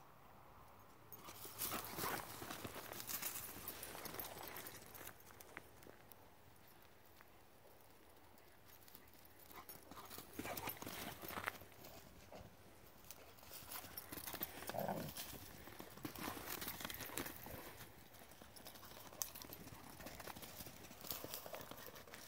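Irregular crunching footfalls and rustling on dry dirt and scrub from dogs moving about and a person walking, in spells of a few seconds with quieter gaps between.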